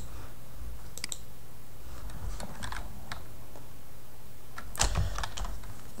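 Computer keyboard and mouse clicks: a few scattered keystrokes, with a short cluster of key presses near the end.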